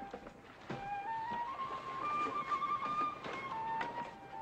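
A flute-like melody of long held notes, the strange bird song that the crew take for an omen. A short gap comes early, then the notes climb in small steps, hold, and drop back near the end, with a few faint knocks underneath.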